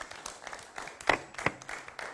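Audience applause, a dense patter of hand claps. Two louder knocks sound just after a second in and again about half a second later, as a handheld microphone is set down on a table.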